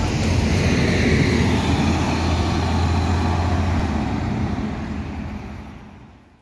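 Double-decker city bus pulling away from the stop, its engine loud close by at first, then fading steadily over the last couple of seconds as it drives off.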